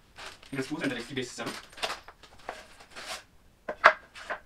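Cardboard and plastic wrapping rustling as flat-pack wooden table parts are unpacked and handled, ending in a sharp knock.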